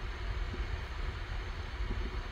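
Steady low hum and hiss of background room noise, with a few faint clicks.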